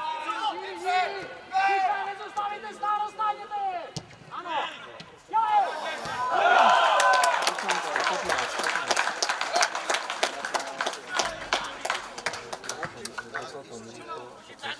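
Shouting voices on a football pitch during play, loudest about six seconds in. After that comes a long run of sharp, irregular claps until the end.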